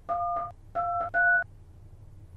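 Smartphone touch-tone keypad beeping three times as a number is dialled, each beep a two-note DTMF tone, the second and third close together and slightly higher in pitch.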